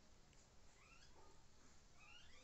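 Near silence, with a few faint, short rising calls from an animal.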